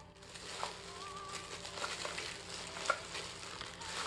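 Clear plastic wrapping crinkling softly as a bagged item is handled and turned over in the hands.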